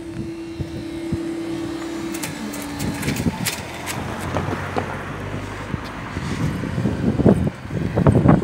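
Car engine and tyres as a car drives over the level crossing close by, a low rumble swelling in the middle. A steady hum stops about two seconds in.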